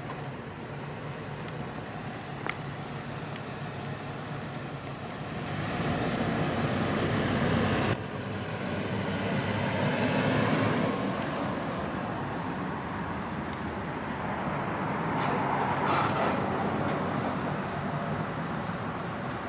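An SUV driving slowly past on asphalt, its engine and tyre noise swelling as it comes close; the sound breaks off sharply about eight seconds in, then rises again and fades.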